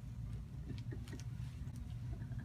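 Steady low room hum, with a few faint, brief background voices and light clicks.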